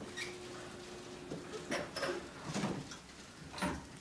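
Elevator car's single-speed sliding door closing: a steady low hum for the first second and a half or so, then several knocks and clunks.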